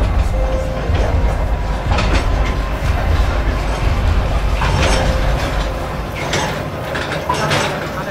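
A mine rail car running with a low rumble and metallic clatter. The rumble dies away about six seconds in, leaving a few sharp clanks.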